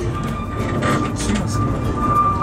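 Ikawa Line train running, with a steady rumble of wheels on the rails and a few clicks. A steady high whine sets in just as it starts and holds on.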